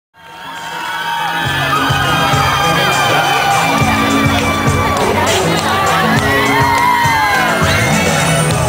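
Concert audience cheering and screaming with many high-pitched shrieks, over the song's opening music, whose bass notes come in about a second and a half in.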